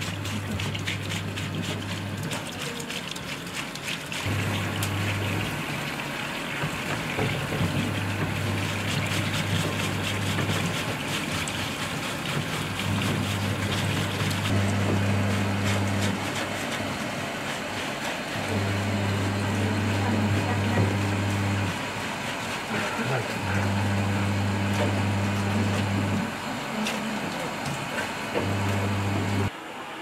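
Tap water running into a stainless-steel sink while a soiled uniform is scrubbed by hand with detergent and a bamboo scrubbing brush, with short scraping strokes. A low bass line from background music comes and goes over it.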